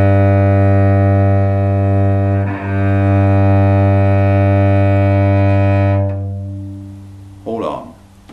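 Cello played with slow whole bows on a low open string, a low G: one long even note with a short break at the bow change about two and a half seconds in. The note carries on and stops about six seconds in, then rings away.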